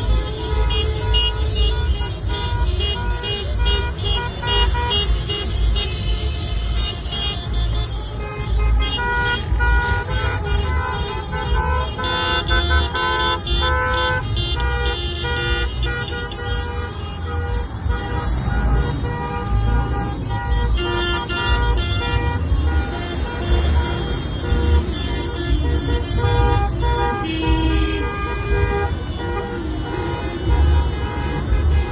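Many car horns tooting over and over, overlapping one another, above the steady low rumble of slow-moving cars.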